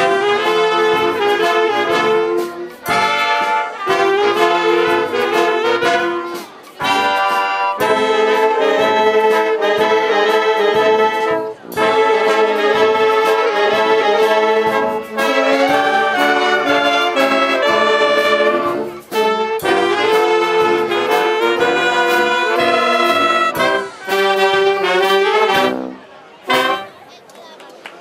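A wind band of flutes, clarinets, saxophones, trumpets, trombones and French horn playing a piece under a conductor, in phrases broken by brief pauses, stopping near the end.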